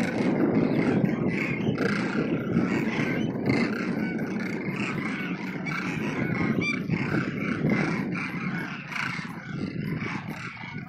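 A large flock of demoiselle cranes calling together, a continuous din of many overlapping calls, over a low rumble.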